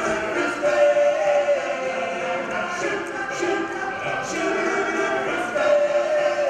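Male a cappella group of about ten voices singing in close harmony, holding chords that step from note to note.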